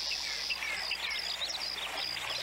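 Birds chirping and calling: many short chirps and falling whistles over a high note repeated about three times a second.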